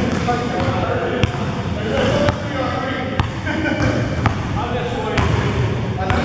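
A basketball bouncing on a gym floor, with sharp bounces about once a second amid players' voices, echoing in a large indoor hall.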